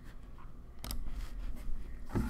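Faint steady low hum with a single sharp computer mouse click about a second in.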